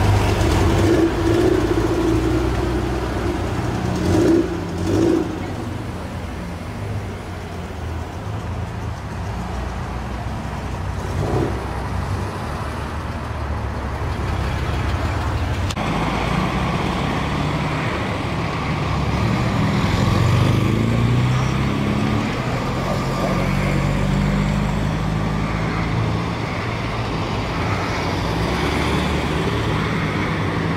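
Classic cars driving off one after another at low speed. Their engines run and rev up and down as each car pulls away past the listener.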